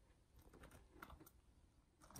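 Faint, scattered light ticks and scratches of a pet rat's claws on cardboard boxes as it climbs across them.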